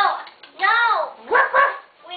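A child's high-pitched, short playful vocal calls, about four in quick succession, each rising and falling in pitch like a mock bark.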